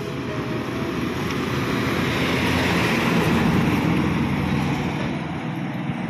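Highway traffic noise: vehicle engine and tyre noise that swells to a peak about halfway through and then fades.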